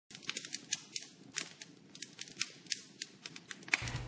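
Fire crackling: an irregular run of small sharp pops and snaps, several a second.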